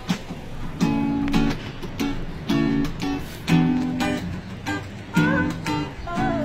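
Acoustic guitar strummed in short, separated chords, each struck chord ringing briefly before the next.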